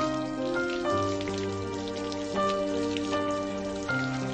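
Slow instrumental music of held notes changing every second or so over a low bass line, with a fine patter of raindrops layered over it.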